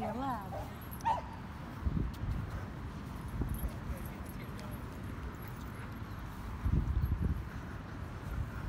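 A man laughs briefly at the start, then a low rumble runs on the microphone, with a thud about two seconds in and a louder stretch of rumbling near the end.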